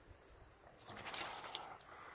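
A propane torch's small flame burning on the propane left in the hose after the gas valve has been shut, a faint soft hiss that comes up about a second in.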